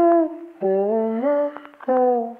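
A voice humming a slow melody with no beat under it: a short held note, then a longer phrase that steps upward in pitch, and a new note starting near the end, each note sliding gently into the next.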